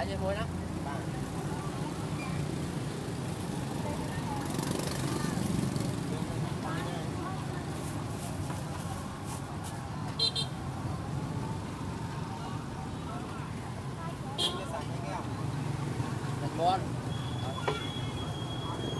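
Busy street ambience: a steady traffic rumble with scattered background voices, and a few sharp clinks.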